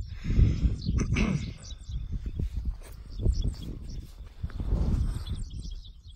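Wind buffeting a phone's microphone in uneven gusts, with some rustling from the phone being handled.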